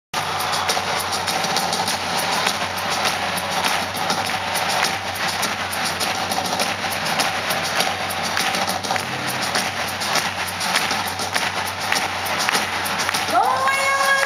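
Live pop-rock concert heard from the audience seats of an arena: the band playing under steady crowd noise, with many sharp hits throughout. Near the end a singer's voice slides up into one long held note.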